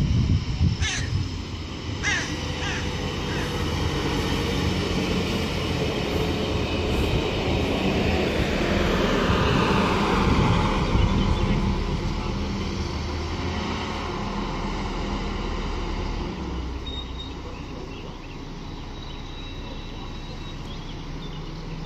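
LINT 54 diesel multiple unit running through the station, its engine and rail noise building to a peak about halfway through, with a falling whine, then fading away.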